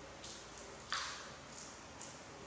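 A crisp crunch about a second in, from biting into a fresh lettuce leaf, with fainter crunches of chewing just before and after.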